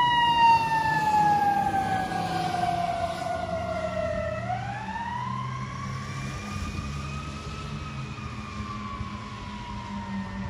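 Fire engine siren in a slow wail: its pitch falls steadily for about four seconds, rises again, then slowly falls, growing fainter as the truck drives away, over the low rumble of its engine.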